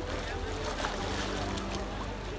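Pool water splashing and sloshing as a swimmer swims past close by, stroking and kicking.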